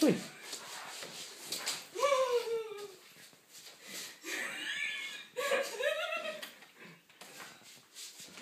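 A person's voice making a few high, sliding sounds without clear words, separated by quieter pauses.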